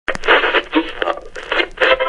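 Short, choppy snatches of tinny, radio-like voices, like a radio being tuned across stations, starting with a click.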